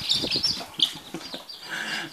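Short high-pitched animal cries from a cardboard box, a few in the first second, mixed with scrabbling against the cardboard as a kitten clambers at the box's edge.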